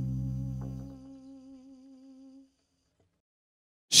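Upright double bass ending a solo passage: its low notes ring out and fade, and a higher held note wavers with vibrato as it dies away. Silence follows until a voice comes in at the very end.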